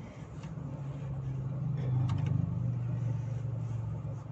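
Toyota Innova Zenix hybrid's engine running with the car stopped, heard inside the cabin as a low steady hum that grows louder about a second and a half in. A few faint clicks sound over it.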